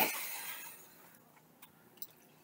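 A glass bottle clinking against a stemmed beer glass at the start, the ring fading over about half a second, followed by a few faint ticks.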